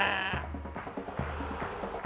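A short, loud, wavering high-pitched cry ends about half a second in, followed by soft background music.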